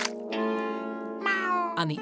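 Cartoon soundtrack music with a held chord, joined from about a third of a second in by a high, wavering cry that glides down in pitch in the second half. The sound changes suddenly just before the end.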